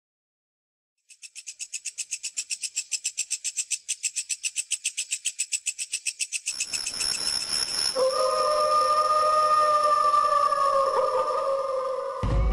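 Night sound effect: insects chirring in fast, even pulses, about nine a second, from about a second in. About halfway through a steady hiss comes in, and a wolf gives one long, steady howl that sags slightly at its end.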